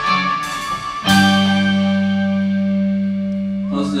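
A rock band's final chord: electric guitars and bass hit together about a second in and left ringing, slowly dying away at the end of the song.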